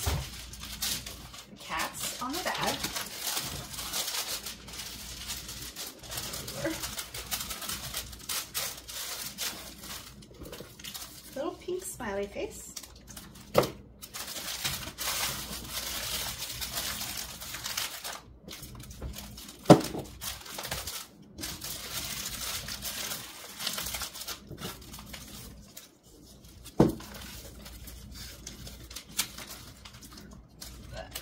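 Tissue paper crinkling and rustling in stretches as it is folded by hand around a small item, with three sharp taps, the loudest about two-thirds of the way through.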